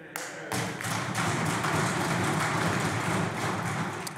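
Applause from a chamber of legislators: hands clapping with thuds of desk-thumping mixed in. It builds about half a second in as a dense patter and fades at the end.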